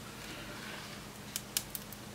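Three faint, short clicks in the second half as pliers grip and crack the plastic overmoulding of a Lightning cable plug.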